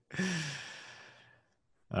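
A man's breathy sigh: a short falling voiced sound that trails into a long exhalation and fades out over about a second.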